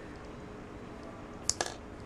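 Small plastic spring-loaded toy missile launcher from a Kre-O brick set firing as its button is pressed: a sharp double click about one and a half seconds in.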